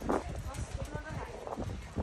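Indistinct talking among nearby spectators, with irregular low, dull thumps underneath.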